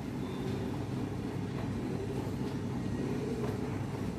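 Steady low background hum in a room, with faint squeaks and strokes of a marker writing on a whiteboard.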